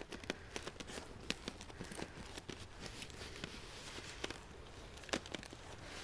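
Faint handling sounds: scattered light clicks and crinkles as duct tape is pressed and smoothed around a plastic milk jug.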